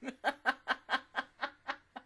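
A woman laughing: a quick run of about ten short laughs, roughly five a second, fading toward the end.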